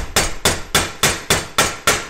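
Claw hammer striking mineral-insulated copper-clad (pyro) cable laid on a steel bench vise, with quick, even, sharp metallic whacks, about seven of them at roughly three a second, each ringing briefly. The blows are flattening the cable's round copper sheath.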